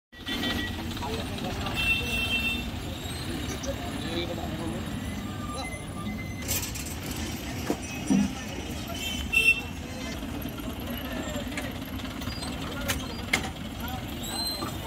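Busy outdoor crowd-and-traffic ambience: a steady low rumble of truck engines under background voices, with a few short sharp knocks and a brief louder call about nine seconds in.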